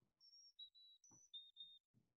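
Carolina chickadee song played from a recording: faint, clear whistled notes alternating high and low, the 'fee-bee fee-bay' pattern, starting a moment in.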